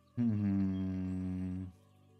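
A man's long low hum or groan, starting suddenly and held about a second and a half, sinking slightly in pitch, over quiet background music.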